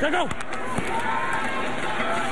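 Stadium crowd noise at a football game: a steady din of many voices. A single voice calls out briefly at the very start.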